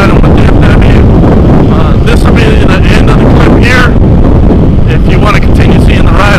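Heavy wind buffeting on a helmet-mounted microphone at riding speed, very loud and steady. Underneath is a Yamaha WR450F's single-cylinder four-stroke engine.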